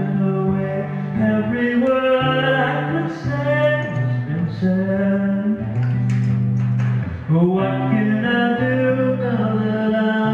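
Solo live performance of a folk-rock song: guitar accompaniment with a held melody line over it, its notes stepping and now and then sliding in pitch.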